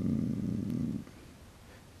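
A man's low, rough throaty sound, a creaky drawn-out hesitation noise, lasting about a second.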